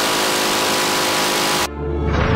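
M134D minigun firing one sustained burst of 7.62×51 mm at about 3,000 rounds a minute, the shots running together into a continuous loud buzz. It cuts off suddenly shortly before the end.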